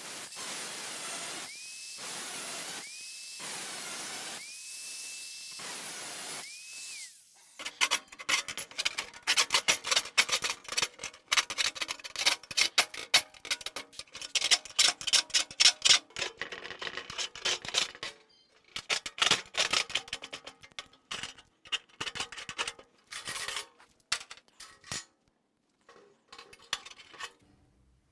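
Angle grinder with a cutoff wheel cutting sheet steel into strips in several short passes, its whine rising to a steady pitch each time. After about seven seconds, a hand deburring tool scrapes along the cut edge of a steel floor pan in many quick, irregular strokes.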